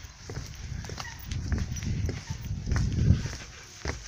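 Footsteps through dry reeds, the dry stalks rustling and snapping, with low buffeting rumbles on the microphone that swell loudest about three seconds in.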